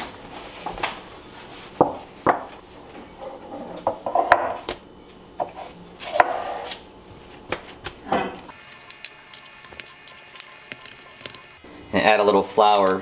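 Kitchen handling sounds: scattered knocks and clinks as a green glass mixing bowl is set down and dough is tipped out onto a countertop next to a wooden pizza peel. In the last few seconds a steady held chord of music runs under a few light ticks.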